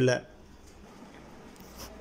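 A man's voice ends a word at the very start, then faint room noise with one soft, brief noise near the end.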